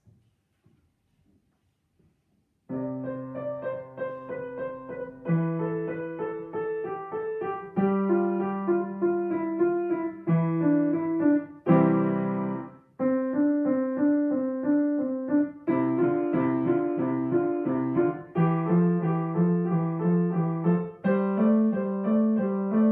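Grand piano played solo: after a near-silent pause, a piece begins about three seconds in, with quickly repeated notes over chords that change every two to three seconds.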